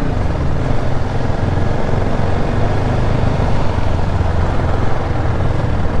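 Sport motorcycle engine running steadily at low road speed, a continuous low hum heard from the rider's seat.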